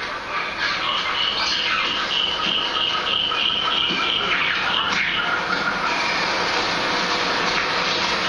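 Nature documentary soundtrack played over a room loudspeaker: a steady bed of high, repeated chirping calls with no narration.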